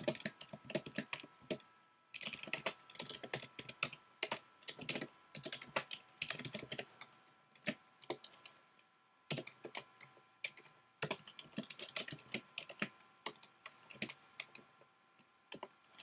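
Typing on a computer keyboard: quick runs of keystrokes in bursts, broken by short pauses, the longest lasting about a second just past the middle.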